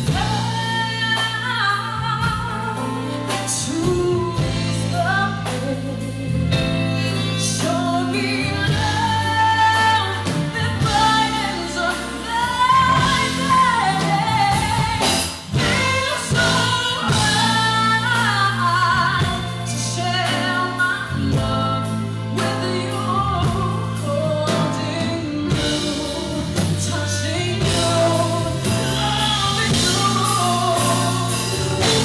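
Live band playing a smooth soul/R&B song, a woman's voice carrying the melody over electric guitar, bass, keyboards and drums with a steady repeating bass line.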